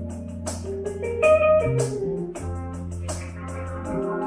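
A live jazz-funk band playing: electric bass holding long low notes under keyboard chords and melody notes, with the drum kit's cymbals ticking in a steady rhythm.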